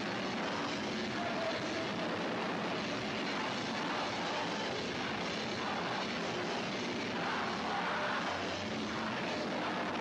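Hardcore punk band playing live, heard as a loud, steady wall of distorted sound with no clear beat, and some shouting coming through in the second half.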